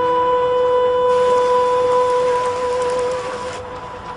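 Background music: one long held note, with a hiss of noise that swells in about a second in and cuts off shortly before the end.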